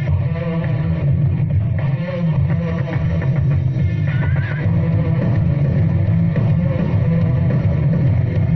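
Rock band music: electric guitar with bass and drums playing steadily, with a short wavering high guitar note about halfway through.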